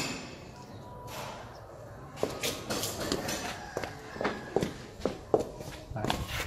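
Footsteps walking along a paved side path: quiet at first, then a run of short steps, about three a second, from about two seconds in.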